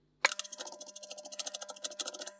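Rapid, evenly spaced clicking, about fourteen clicks a second, with a faint steady hum underneath, as a moderator is screwed onto the threaded end of an air rifle's carbon fibre shroud.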